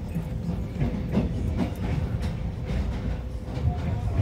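Passenger train running through a rail yard, heard from inside the carriage: a continuous low rumble with a faint steady tone and a few sharp wheel clicks over rail joints and points.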